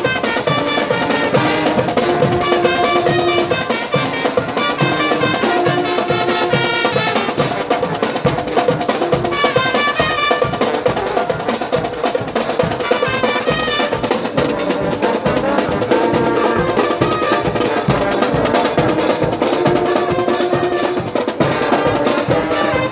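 A marching band playing live: snare and bass drums keep a steady march beat under a brass section of trombones, trumpets and low brass carrying the tune.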